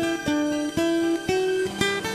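Background music: a plucked string instrument playing a single melody of separate notes, about two a second.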